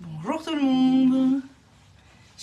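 A woman's voice: one drawn-out vocal sound, rising in pitch and then held on a steady note for about a second, like a hum or a sung vowel rather than words.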